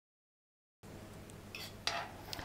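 After a moment of dead silence, faint clinks of a metal spoon against a metal baking sheet as dough is spooned out, with one sharper clink near the end.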